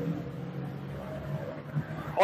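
Road traffic: a steady low rumble of passing vehicles, heard over an open outdoor microphone.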